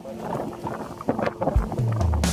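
Wind gusting across the microphone in irregular crackles, under quieter background music.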